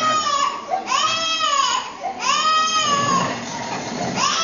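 A baby crying hard, about three long wails in a row, each rising and then falling.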